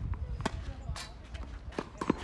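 Tennis serve: the racket strikes the ball, then more sharp ball impacts follow as it bounces and is played back, three clean knocks in all. A low wind rumble runs underneath on the microphone.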